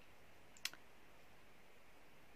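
Near silence with room tone, broken by one short, sharp click about two-thirds of a second in.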